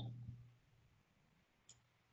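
Near silence on a video-call audio line, broken by a faint click at the start with a short low hum after it, and another faint click near the end.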